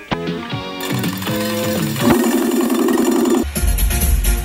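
Electronic dance music playing: a synth line stepping in pitch, then a steady held chord from about two seconds in, with heavy bass coming in near the end.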